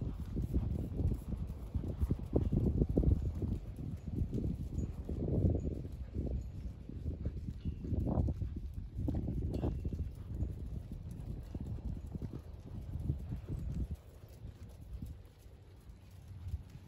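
Horse's hooves beating on arena sand at a trot, quieter near the end.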